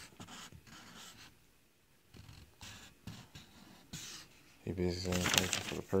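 Faint, irregular rustling of a paper invoice and packaging being handled, then a man's voice starting to speak about four and a half seconds in.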